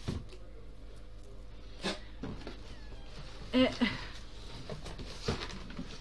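A cardboard shipping box being handled: a few short knocks and rustles as it is moved. A brief hesitant 'eh' is spoken about halfway through.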